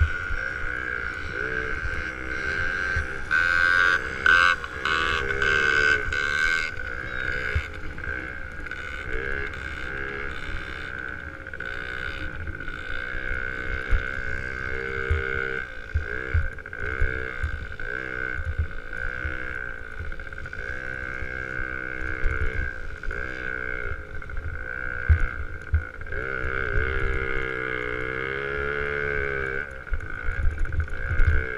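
Small dirt bike engine running along a dirt motocross track, its pitch rising and falling over and over as the throttle is opened and eased off. A steady high whine runs under it, and a rough crackle cuts in for a few seconds near the start.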